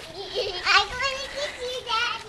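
Young children's voices, several short high-pitched wordless calls as they play.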